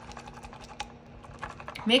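Small wire whisk beating a runny melted-butter mixture in a glass measuring cup: a rapid, irregular clicking of the wires against the glass.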